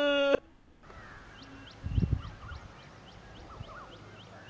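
A man's long, held scream cuts off abruptly about half a second in. Then comes quiet outdoor ambience with a bird chirping over and over, about three to four short chirps a second, and a low thud about two seconds in.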